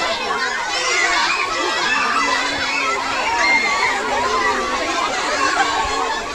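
A crowd of schoolchildren shouting and talking all at once, many voices overlapping with no pause.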